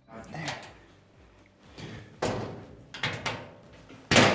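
Steel cabinet doors being unlatched and swung open: a sudden metallic clunk about two seconds in, followed by a few more knocks and rattles of the sheet-metal doors.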